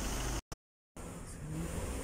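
Steady low mechanical rumble in the background, broken about half a second in by a brief gap of dead silence at an edit cut.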